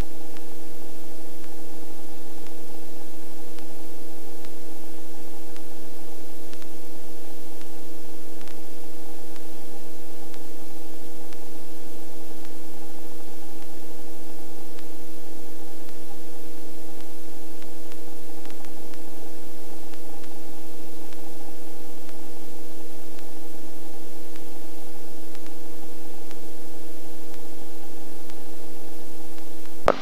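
Small helicopter in low, slow flight, heard from the cockpit: a steady hiss of rotor and engine noise with a constant hum of several even tones, unchanging throughout.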